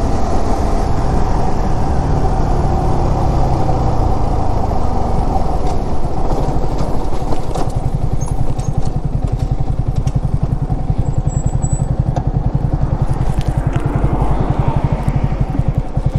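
Yamaha sport motorcycle engine running as the bike rolls along, then easing off and idling with a steady low pulse from about five seconds in.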